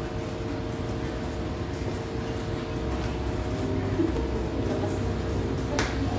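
Faint background music over a steady hum, with a single sharp click near the end.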